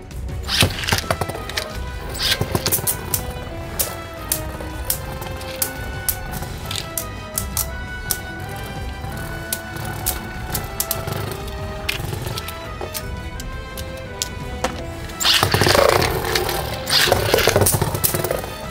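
Background music over two Beyblades, Tempest Dragon and Variant Lucifer, spinning and clashing in a stadium. Sharp clicks of collisions come throughout, with a louder stretch of clattering and scraping starting about three seconds before the end.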